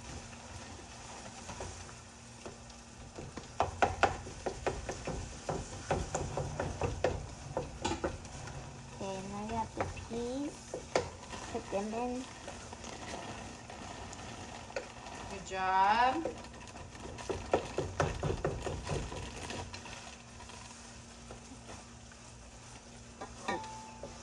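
Frozen green peas poured from a plastic bag rattle into a bowl of frozen vegetables in bursts of rapid clicking, with the bag crinkling. In the middle come a few short pitched whines, the loudest rising and falling about two-thirds of the way through.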